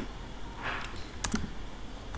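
A few sharp clicks of computer keys, about a second in.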